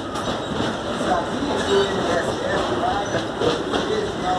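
Open freight wagons of an MRS Logística train rolling steadily past, their wheels running over the rails with a continuous rolling noise and faint repeated clicks.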